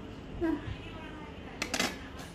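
A nearly empty plastic squeeze bottle of sauce spluttering as it is squeezed, a brief crackly burst of air and sauce near the end.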